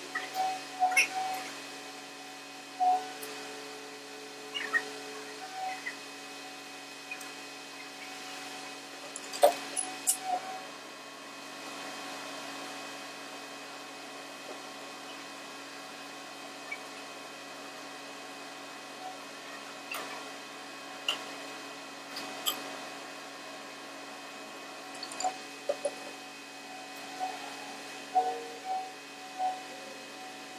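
Steady hum under scattered sharp metallic clinks and knocks from steel tools and parts being handled at a truck-mounted vise, some leaving a brief ring.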